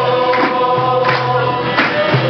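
Music: several voices singing together and holding one long note, with percussion hits.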